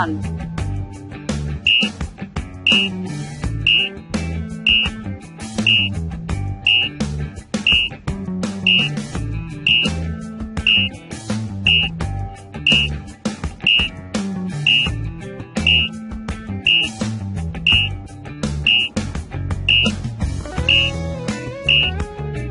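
Background music with a steady beat and guitar, with a short high beep about once a second: an interval timer ticking off the seconds of an exercise countdown.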